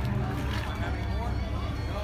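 Background chatter of people talking, over a steady low rumble.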